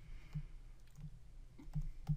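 A few faint, scattered clicks and taps of a stylus on a tablet as words are handwritten, over a low steady background hum.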